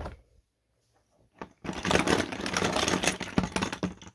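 Cotton cloth rubbing and rustling close against the microphone: a dense, loud, scratchy crackle starting about a second and a half in, after a near-silent start and a single click.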